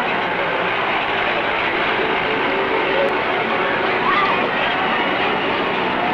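Amusement-park din: a steady, dense wash of ride machinery and crowd noise, dull and cut off in the treble as on an old 16 mm film soundtrack. A few faint sounds briefly rise and fall in pitch above it about four seconds in.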